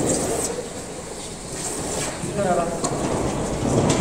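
Wind buffeting the microphone, a rough low rumble, with faint voices behind it.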